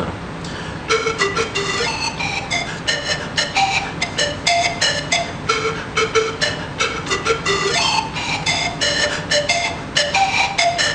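Solo zampoña, an Andean bamboo panpipe tuned in D minor, playing a melody of short, separate breathy notes that begins about a second in.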